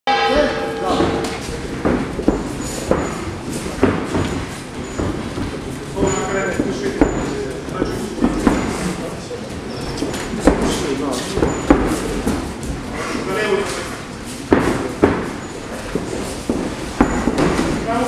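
Punches and kicks landing and bare feet thudding on the canvas in an MMA cage fight: sharp, irregular smacks and thumps, several in quick succession at times. Shouting voices of corner men and spectators run beneath them.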